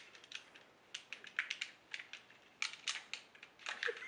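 Plastic buttons on Nintendo GameCube controllers clicking as they are pressed, in quick irregular clusters.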